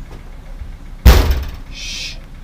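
A single loud thunk about a second in as a metal garage cabinet door is banged, followed near the end by a brief high-pitched rasp.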